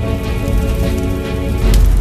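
Dramatic soundtrack music with sustained chords, mixed with scattered short crackles and a deep low hit near the end.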